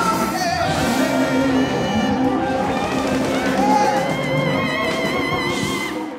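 Live rhythm-and-blues band with singers, playing over ringing cymbals; a long note with vibrato is held over the band in the last two seconds.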